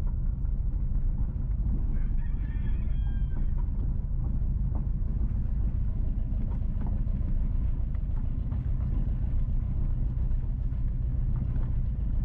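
Steady low rumble of a car driving slowly along a gravel road. About two seconds in, a bird calls once for about a second and a half over the rumble.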